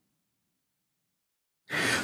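Near silence, then near the end a man's audible breath, an even breathy rush drawn just before he speaks.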